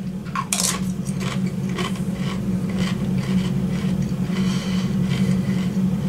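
A crisp bite into a Doritos Toasted Corn tortilla chip about half a second in, followed by steady chewing crunches, about three a second.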